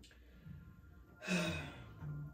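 A woman sighs once, about a second and a half in: a breathy exhale with a voice that falls in pitch.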